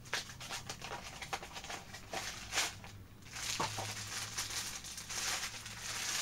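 A Funko Mystery Minis blind box being opened by hand: a run of small cardboard clicks and tears, then about three seconds in, a denser stretch of crinkling as the wrapper inside is pulled open.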